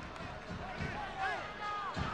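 Faint football-stadium ambience with a few distant shouting voices, as a goal goes in and players begin to celebrate.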